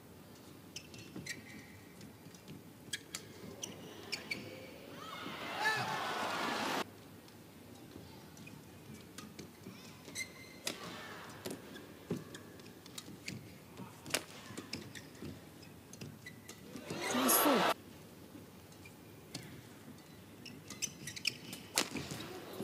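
Badminton rallies in an arena: sharp cracks of rackets hitting the shuttlecock and brief squeaks of shoes on the court. The crowd swells into a cheer about five seconds in and again with shouts near seventeen seconds, as points are won.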